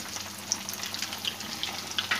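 Breadcrumb-coated bread samosas deep-frying in hot oil in a frying pan, just put in: a steady sizzle with scattered small crackles.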